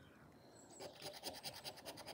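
Faint scratching of a plastic poker-chip scratcher rubbed over the silver latex panel of a scratch card, starting about half a second in as quick, even back-and-forth strokes, roughly six a second.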